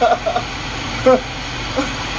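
Steady machinery hum and hiss, like ship's machinery or ventilation, with a few short bits of a man's voice or laughter near the start, about a second in and near the end.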